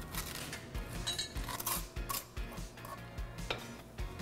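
Metal spoon scraping seeds and stringy pulp out of a halved raw spaghetti squash, in irregular short scrapes and clicks.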